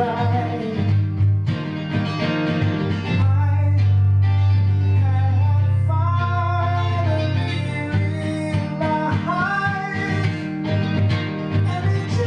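A man singing held, wavering notes that rise and fall, accompanied by his own guitar, with deep notes ringing on for several seconds underneath.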